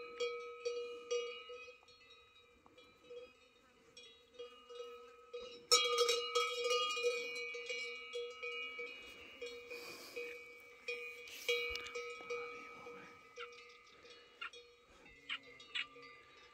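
A cowbell on a cow's collar clanking irregularly as the cow moves its head, its tone ringing on between strikes. It goes quiet for a few seconds early on, then the loudest clanks come about six seconds in and again near twelve seconds.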